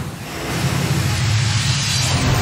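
Television news ident sound design: a swelling whoosh over a deep sustained drone, growing louder as the programme logo is revealed.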